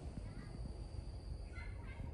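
A few faint, short animal calls near the end, over a low steady rumble and a thin high background whine.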